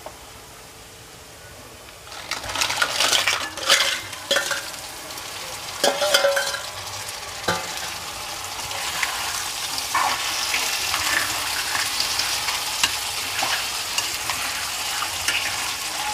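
Crab pieces going into a kadai of onions frying in oil, with a steel ladle knocking and scraping against the pan, then a steady sizzle with small crackles as the crab fries and is stirred.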